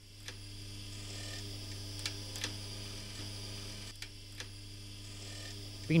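Steady low electrical mains hum, with a few faint clicks scattered through it.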